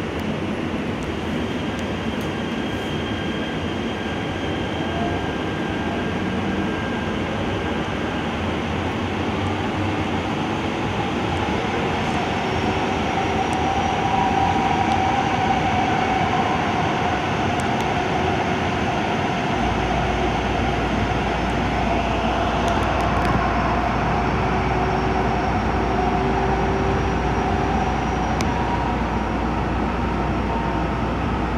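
Los Angeles Metro light rail train pulling out of an underground station and running through the tunnel, heard from the front of the car. The running noise grows louder as it picks up speed, with a wavering whine in the middle and later part and a low hum that comes in about two-thirds of the way through.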